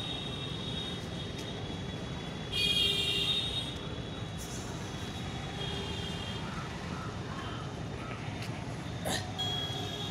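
Steady rumble of a moving vehicle and its tyres on the road. A high squeal lasts about a second, about two and a half seconds in, and is the loudest sound. A sharp click comes near the end.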